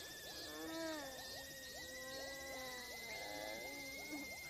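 Faint audio of an anime episode playing quietly: a thin, steady high tone over lower, wavering and sliding tones, like soft background music or a sound effect.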